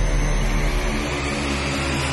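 Electronic intro sound effect: a loud, steady low drone with several held tones and a rushing noise layered over it, the build-up before a recorded announcement.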